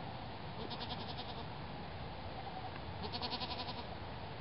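Goat bleating twice, each a short wavering bleat under a second long: one about a second in, the other near the end.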